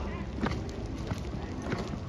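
Footsteps crunching through dry fallen leaves, in an irregular run of steps, over a steady low rumble from the walk.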